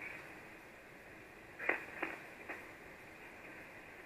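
Icom IC-706MKIIG transceiver's receive audio on 75-metre SSB between overs: a steady hiss of band noise limited to the narrow single-sideband passband, with three short crackles near the middle.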